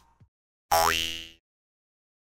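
A short cartoon sound effect, a springy boing with a rising pitch, starting sharply and lasting under a second.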